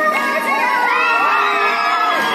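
A crowd of schoolgirls shouting and cheering together, many high voices rising and falling over one another.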